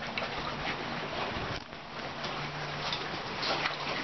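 Lake water slapping against a dock under a steady low engine hum that fades in and out.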